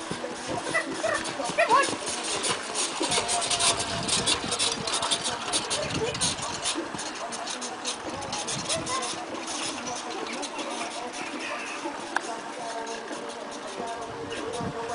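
Pony's hoofbeats and the rattle of a four-wheeled driving carriage at speed over a sand arena, a busy run of clatter that thins out in the last few seconds. Voices and music play faintly behind it.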